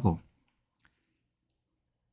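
A man's Korean speech ends just after the start, followed by a near-silent pause broken by a few faint clicks.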